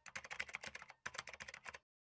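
Computer-keyboard typing sound effect: rapid keystroke clicks, about ten a second, in two runs with a short break around the middle, stopping just before the end.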